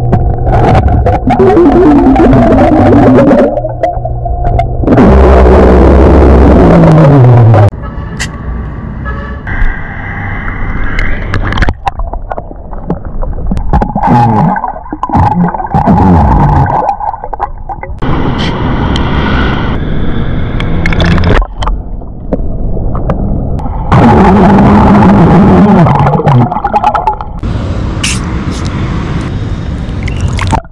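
Loud underwater burps from a submerged man: several long belches, some falling in pitch, with gurgling and bubbling between them as he drinks from bottles underwater.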